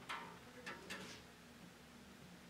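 A few faint clicks and taps, about three in the first second, over quiet room tone.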